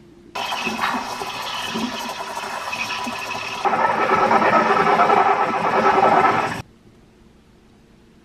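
Steam wand of a De'Longhi Icona Vintage espresso machine frothing milk in a stainless steel pitcher: a hissing squeal that starts about half a second in, grows louder just before halfway, and cuts off sharply near the end.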